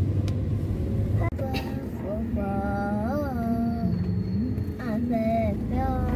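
Steady road and engine rumble heard inside a moving car's cabin. In the middle a person's drawn-out voice rises and then falls in pitch, with a shorter voiced sound a little later.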